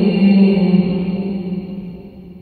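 A man's voice chanting a Quran recitation into a microphone, holding one long melodic note at the end of a phrase that fades out over the last second.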